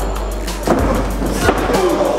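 Background music with two sharp thuds of wrestlers' bodies hitting the boards of a wrestling ring, one about a third of the way in and a louder one near the end.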